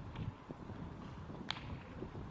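Faint thuds of footsteps on a grass training pitch, with one sharp click about one and a half seconds in.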